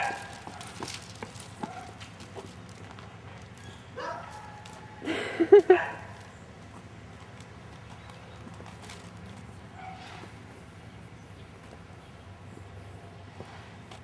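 Footsteps on an asphalt street, a quick run of clicks in the first two seconds and then fainter steps. About five seconds in a person's voice cries out briefly and loudly.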